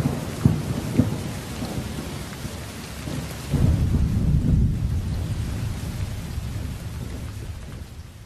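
Rain hiss with thunder: two sharp cracks about half a second apart near the start, then a loud low rumble about halfway through, the whole fading out steadily.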